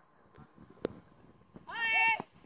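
A child's high-pitched call, held for about half a second near the end. A single sharp click comes about a second in.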